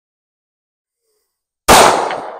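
Silence, then near the end a single 9 mm pistol shot from a Ruger Security-9 Compact, sharp and sudden, with a trailing echo.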